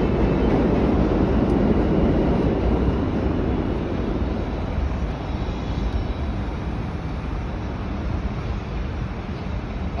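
Street traffic noise on a city avenue: a steady rumble that is loudest over the first few seconds, as a vehicle goes by, and then eases off.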